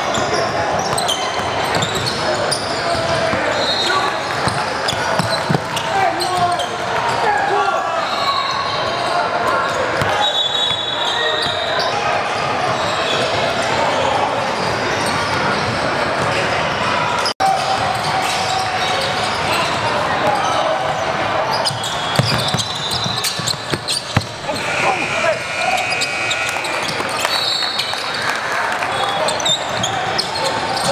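Indoor basketball gym during a game: a ball bouncing on the hardwood court, overlapping voices of players and spectators echoing in the large hall, and short high squeaks scattered throughout. The sound cuts out for an instant just past halfway.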